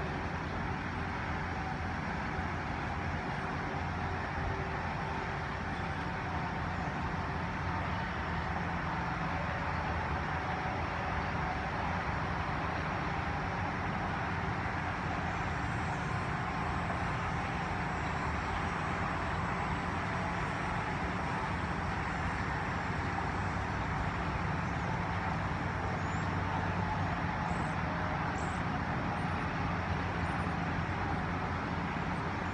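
Steady rumble of distant road traffic and engines with a low hum, growing slightly louder.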